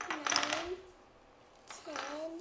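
A young child's voice making two short wordless vocal sounds, the second starting near the end.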